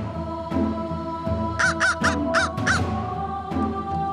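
A crow cawing five times in quick succession about halfway through, over background music with a steady beat.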